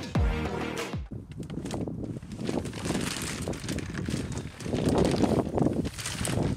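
A burst of electronic music with a falling bass sweep ends about a second in. It gives way to irregular rustling and handling noise as the plastic wrapping is worked off a new sit-on-top pedal kayak, growing louder near the end.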